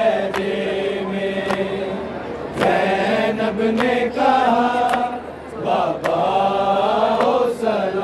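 Men's voices chanting a noha, an Urdu Shia lament, without instruments, in long drawn-out held notes. A few sharp knocks are heard in between.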